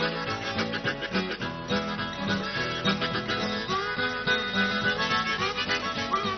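Blues harmonica playing an instrumental break over a strummed acoustic guitar, with notes bent and slid upward a few seconds in.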